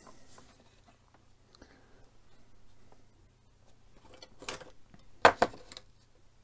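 Plastic dashboard part of a model car kit being handled by hand: a few light rustles, then a few sharp clicks and knocks of the plastic about four and a half to five and a half seconds in, the loudest just after five seconds.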